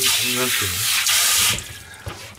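Kitchen mixer tap running into a stainless steel sink, then shut off abruptly about a second and a half in.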